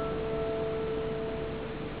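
Classical guitar: a plucked note left ringing, one clear tone that fades slowly.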